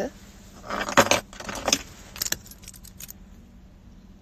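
A keychain jangling and clinking as it is picked up and handled, in several short bursts over the first three seconds.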